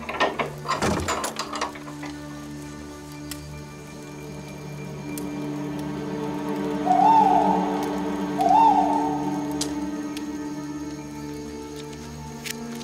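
A sustained, low droning film score. In the first two seconds there is a quick cluster of knocks and scrapes. About seven and eight and a half seconds in come two short hoots, each rising and falling in pitch, louder than the rest.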